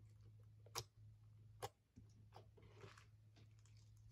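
Faint sounds of a thick beaded slime being poked and stretched by hand: two sharp clicking pops just under a second apart, then a soft crackle, over a low steady hum.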